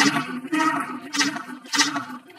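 Cartoon magic sound effect as sparkling powder takes hold: a rushing, watery swish over a steady low hum, starting suddenly and swelling about three or four times.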